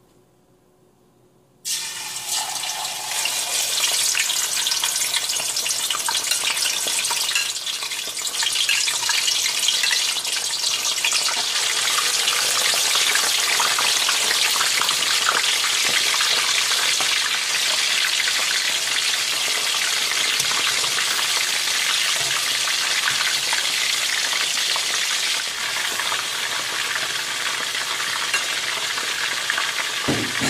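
Pieces of tilapia frying in hot oil in a wok. After about a second and a half of near silence, a loud sizzle starts suddenly as the fish goes in, then carries on as a steady hiss.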